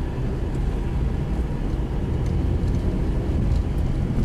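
Inside a car's cabin while driving slowly on a gravel road: a steady low rumble of the engine and tyres on the gravel.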